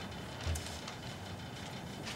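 Faint room noise in a meeting chamber, with a single soft low thump about half a second in.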